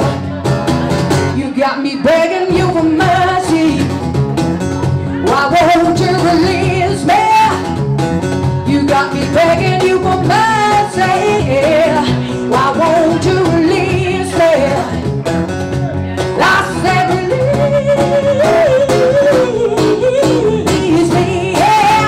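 Live band playing a song: a woman singing into a microphone over electric bass, cajon and acoustic guitar, the melody wavering and held on long notes.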